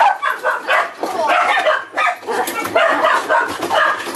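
Dogs barking over and over without a break.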